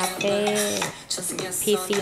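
A music video's soundtrack playing from a laptop: a clatter of small clicking and clinking sounds under voices, with a short lull about a second in.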